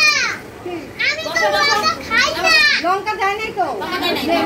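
Children's high-pitched voices calling out and chattering in about four bursts.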